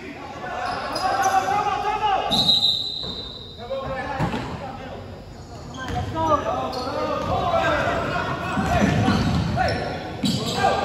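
A basketball bouncing on a hardwood gym floor, with a quick run of dribbles near the end. Voices of players and spectators echo in the gym throughout.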